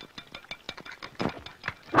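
Chopsticks beating eggs in a bowl: a rapid, even run of light clicks.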